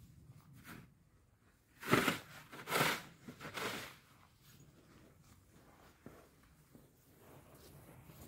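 A long-handled snow tool scraping and pushing snow at a car, three rough scrapes about two, three and three-and-a-half seconds in, with soft crunching steps in snow between them.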